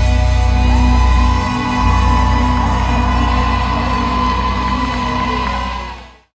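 Live rock band played through an arena PA and heard from the audience: a loud sustained chord over heavy bass, with a high note that swells up about a second in and is held. Some crowd shouts are mixed in. The sound fades out quickly near the end.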